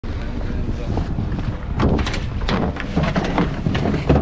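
Wind buffeting a camera microphone in a steady low rumble, with men's voices talking indistinctly over it from about two seconds in.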